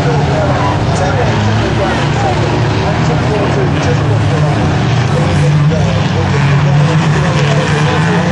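Engines of racing vans running hard around an oval track, a steady loud din, with spectators' voices mixed in.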